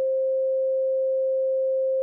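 A single steady, mid-pitched pure tone from an electronic sine-wave generator, holding one pitch and level with nothing else beside it.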